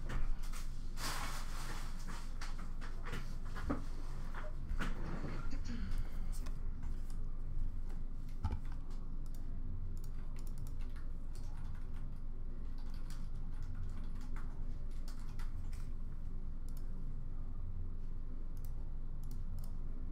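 Computer keyboard typing and clicking: irregular keystrokes, busier in the first several seconds and sparser afterwards, over a steady low hum.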